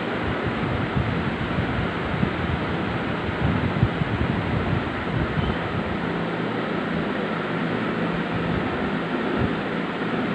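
Steady rushing noise with irregular low buffeting, like moving air hitting the microphone, under a faint steady hum.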